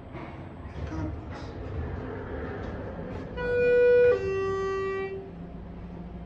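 Schindler 400A elevator chime sounding as the car arrives at a floor: two electronic notes falling in pitch, the higher held a little under a second, the lower about a second. Before it, a low steady rumble of the car travelling.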